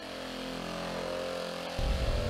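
Craftsman 10-inch random orbital buffer running steadily with a motor hum. Near the end a low rumble of a car driving comes in.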